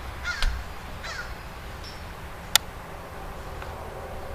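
A bird gives two short calls in the first second or so. A single sharp click comes about two and a half seconds in.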